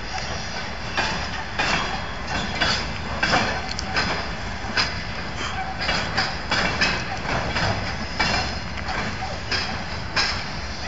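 Freight train of loaded flatcars rolling past close by: a steady rumble with wheels clacking over the rail joints about once or twice a second.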